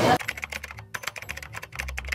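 Rapid computer-keyboard typing clicks, an edited-in sound effect, starting suddenly just after the start as the crowd noise cuts off.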